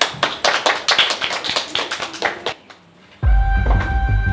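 A quick run of sharp taps lasting about two and a half seconds, then, after a brief lull, background music with a deep bass comes in near the end.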